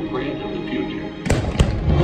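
Fireworks show soundtrack music over the park speakers, then two sharp firework bangs close together about a second and a half in, as the music grows louder.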